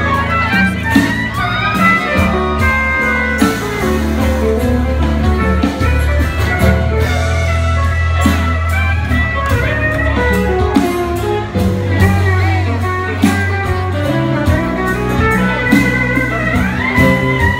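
Live band playing an instrumental passage of a blues song with no singing: a lead line over electric guitar, bass, drums and keyboard, heard from the audience.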